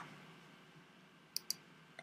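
Two faint, sharp clicks close together about a second and a half in, from the computer's mouse or keys as the typed password is confirmed; otherwise a quiet room.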